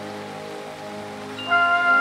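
Rain falling steadily in a brief lull in a brass band's music. About one and a half seconds in, the band's brass comes back in with a loud held chord.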